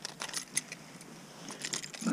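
Light metallic clicks and clinks in two bunches, at the start and near the end, from gear being handled on a metal ladder stand.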